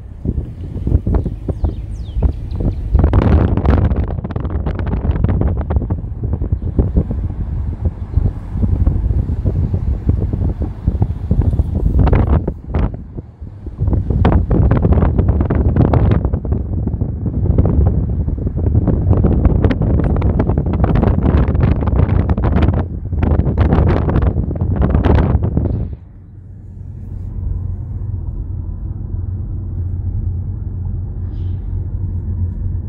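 Wind buffeting the phone's microphone in loud, irregular gusts. About four seconds before the end it drops suddenly to a quieter, steady low rumble of a car interior.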